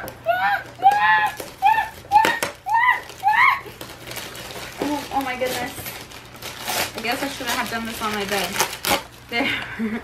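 Gift wrapping paper crinkling and tearing as a present is unwrapped, mostly in the second half, after and alongside high-pitched excited voices.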